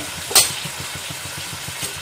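Vegetables frying in oil in a steel kadhai, a steady sizzle over a low rumble, not being stirred. A single sharp click about a third of a second in.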